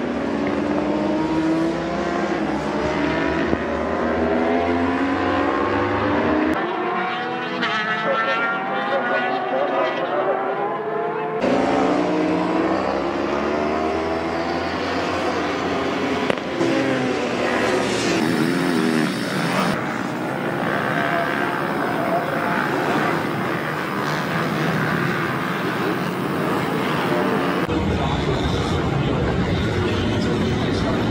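Racing motorcycle engines at high revs, their pitch rising and falling as the bikes accelerate, brake and pass. Several clips are spliced together, so the engine sound changes abruptly a few times.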